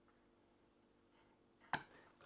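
Faint room hum, then a single sharp metallic click near the end as steel dividers and a brass sheet are handled on a workbench.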